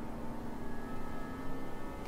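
A quiet, steady background drone with a faint held tone and a light hiss, the film soundtrack's ambient bed.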